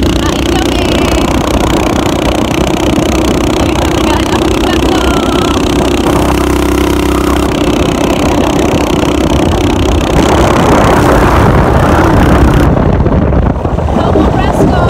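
Motorcycle engine running steadily while it is ridden with passengers on board, with wind buffeting the microphone. The wind noise gets louder about ten seconds in.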